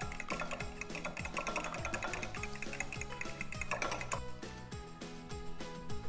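Fork beating eggs in a bowl: rapid clicking taps of the tines against the bowl, over background music with a steady beat.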